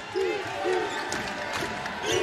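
Indoor basketball arena ambience: a steady murmur of the crowd, with a basketball being dribbled on the hardwood court and a few faint shouts in the first second.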